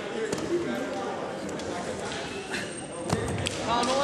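Indistinct voices of spectators and coaches calling out in an echoing gym, with a dull thump about three seconds in.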